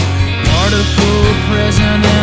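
Original indie rock song with guitar and drums playing a steady beat; a rising pitch slide comes about half a second in.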